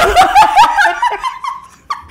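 Loud, high-pitched laughter from a woman, with a man laughing along; it fades out about a second and a half in.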